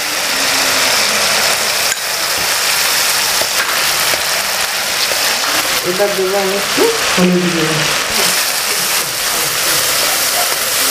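Spice paste sizzling in hot oil in an aluminium wok, with a steel spatula scraping and knocking against the pan as it is stirred.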